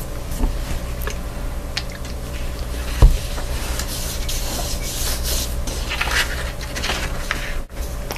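Hands rubbing and pressing a folded sheet of Strathmore cotton bond paper to spread the ink inside, with light rustles and scrapes, a sharp knock about three seconds in and more rustling past the middle, over a low steady hum.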